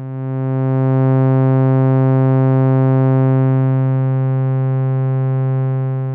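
A single held synthesizer note: a Moog Mother-32 sawtooth wave run through a Rossum Evolution transistor-ladder filter, with the Species control turned up to overdrive the filter. The steady low note grows louder about a second in and its timbre shifts partway through as the drive pushes it toward a square-wave-like tone with the even harmonics suppressed.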